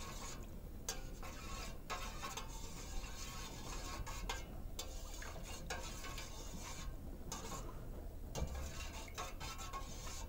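Metal spoon stirring a green jelly mixture in a stainless steel saucepan, scraping and clinking irregularly against the pot's sides and bottom.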